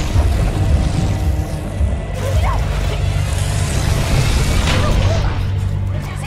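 Dramatic film score with a steady, loud low drone and rumble. Short vocal sounds rise over it about two and a half seconds in and again near the five-second mark.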